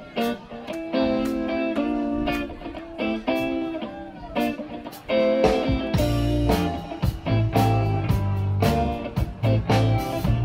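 Live blues band starting a song: electric guitar chords over light drum hits, with the bass and fuller drums coming in a little over halfway through.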